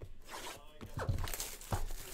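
Cellophane shrink wrap being torn and peeled off a sealed trading-card hobby box: a crackling, crinkling rasp of plastic film in the first second, with a few sharper rips around one second in and near the end.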